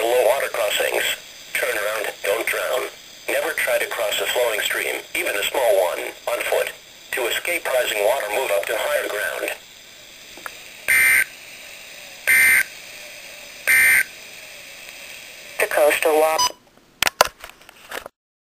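Weather radio broadcast: a voice reading the close of a flood warning, then three short electronic data bursts of the Emergency Alert System code about a second and a half apart, marking the end of the alert message. A brief snatch of voice follows before the sound cuts out.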